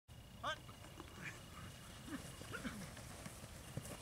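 Faint, distant shouted calls from men on an open football field, short and scattered, with one short knock near the end.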